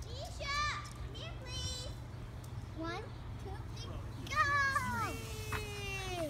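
Children squealing and calling out in high, gliding voices as they slide down the steel playground poles, ending in one long, slowly falling cry near the end.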